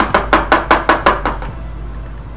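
A quick run of about eight short knocks, some five a second, that stops about a second and a half in: glue bottles being shaken and squeezed over aluminium foil pans.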